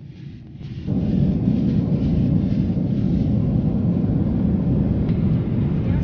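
Steady low rumble of a jet airliner's cabin in flight, engine and airflow noise, stepping up sharply in level about a second in and then holding steady.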